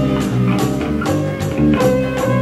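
Indie rock band playing an instrumental passage: guitars and bass over a steady drum beat with tambourine, no vocals.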